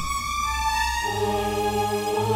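Background score of sustained choir-like chords. About a second in, the chord changes and a low bass note comes in and holds.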